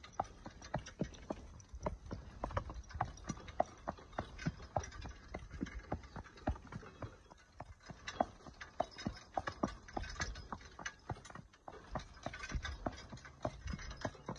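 A harnessed horse's hooves clip-clopping at a walk on concrete, a quick uneven run of strikes, as it pulls a metal cart with reel mowers rolling and rattling along behind.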